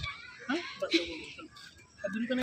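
A child's voice making short, wordless whining sounds that rise and fall in pitch, about half a second to a second in.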